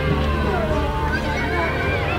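Many high-pitched voices shouting and calling over one another, with a steady low rumble underneath.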